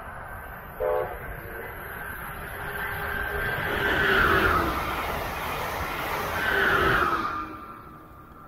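Brightline passenger train passing at 125 mph. A brief horn toot sounds about a second in; then the rushing train noise swells to its loudest in the middle, with tones sliding down in pitch as it goes by, and fades near the end.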